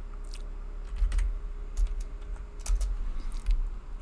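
Computer keyboard typing: a handful of separate keystrokes spread out over a few seconds, each a light click with a soft low thump.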